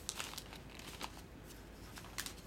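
Gift wrapping paper crinkling as a toddler's hand grabs and pulls at it: short crackly rustles, busiest in the first half second and again about a second in.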